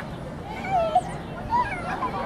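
People's voices: short, high, gliding exclamations about two-thirds of a second and a second and a half in, over a steady background hum of outdoor crowd noise.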